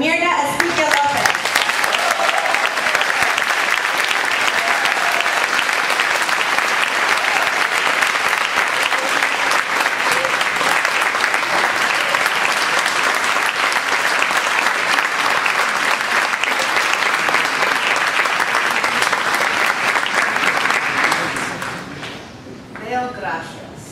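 An audience applauding steadily, the clapping dying away near the end.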